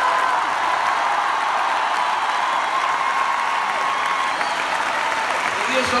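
Large concert audience applauding steadily, a dense even patter of many hands clapping.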